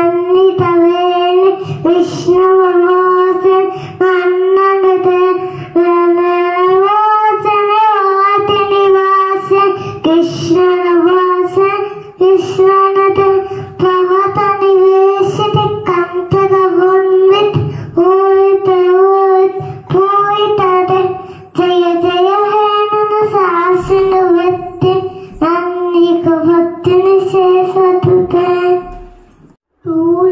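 A young girl singing a song solo into a handheld microphone, holding long, slightly wavering notes; the singing stops just before the end.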